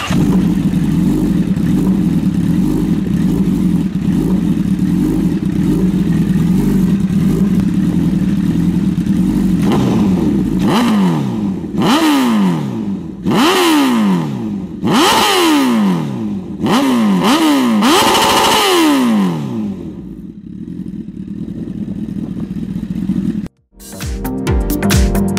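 Honda CBR1000RR's inline-four engine idling steadily, then revved in a quick string of sharp throttle blips, each climbing fast and dropping back. It settles to a lower idle before the sound cuts off just before the end.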